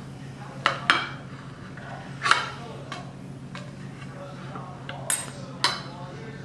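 A kitchen knife cutting through a chilled pound cake layered with cream cheese, its blade knocking and clinking against the ceramic plate in a handful of sharp, separate clicks, the loudest a little over two seconds in.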